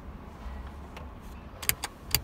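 A low steady rumble with two quick, sharp clicks close together near the end.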